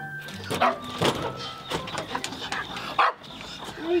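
A run of short animal calls, about two a second.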